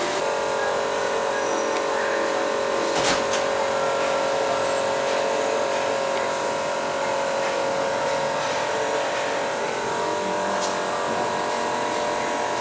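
A steady electric machine hum with several constant tones, unchanging throughout, with a single sharp knock about three seconds in.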